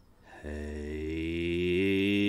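A man's voice holding one long, deep chanted note like an 'om', starting about half a second in and stepping slightly up in pitch near the end.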